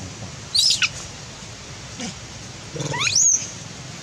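Infant long-tailed macaque giving two high-pitched squeals. The first is short and falls in pitch about half a second in; the second, near the end, sweeps sharply upward and holds high for a moment.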